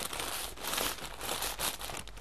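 Potato chips being crushed by hand inside their plastic chip bag: irregular crinkling of the bag with the crackle of breaking chips.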